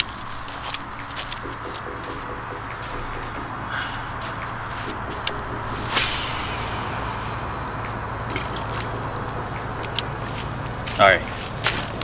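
Baitcasting reel cast: a sharp swish of the rod about halfway through, then a thin high whir of the spool paying out line for about a second and a half, over a steady outdoor background. The angler says this cast bird-nested a little before the spool freed itself.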